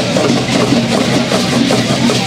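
Dense, steady rattling of many cocoon leg rattles (ténabaris) shaken by stamping dancers, with a hand drum beating.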